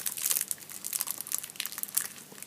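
Clear plastic film wrapper of a sushi onigiri crinkling in the hands as it is peeled back, a run of irregular sharp crackles.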